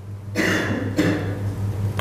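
A person coughing: a rough burst about half a second in that trails off, over a steady low hum.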